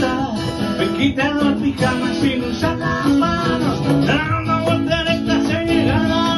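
Live acoustic band: two acoustic guitars strummed over a cajón beat, with a man singing lead.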